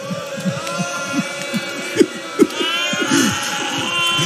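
A mourning congregation weeping and crying out in many overlapping, wavering sobs over a steady held background tone. A higher, wavering pitched line joins about two and a half seconds in.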